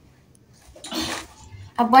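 A brief rustle of packaging being handled, about a second in, after a near-silent moment; speech starts near the end.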